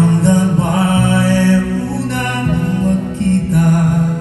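Live music: a man singing long held notes while strumming an acoustic guitar.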